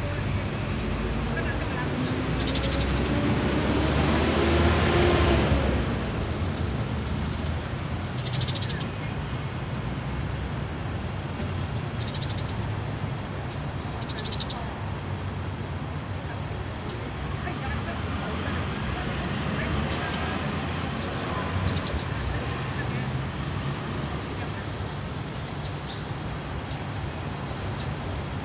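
Outdoor street ambience with a steady low traffic rumble. A motor vehicle drives past in the first few seconds, its engine note rising as it speeds up and loudest about five seconds in. A few short, high chirps are scattered through the rest.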